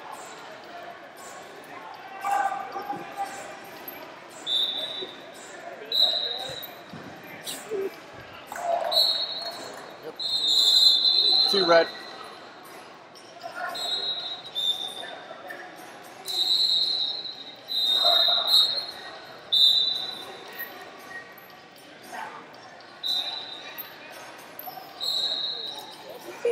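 A wrestling bout in a large hall: about a dozen short, high-pitched squeaks at irregular intervals, the longest and loudest about halfway through, over scattered voices and light knocks.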